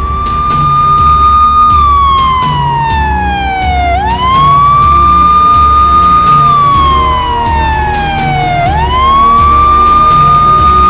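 A siren wailing in slow cycles: each one rises quickly, holds, then slides down over a couple of seconds, starting over about four seconds in and again near the end. Beneath it runs music with a steady low beat.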